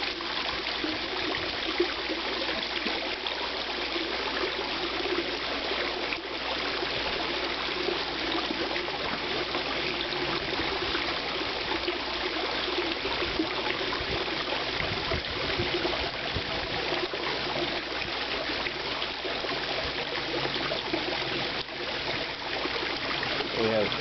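Steady trickling and splashing of water spilling into a koi pond from a small water feature.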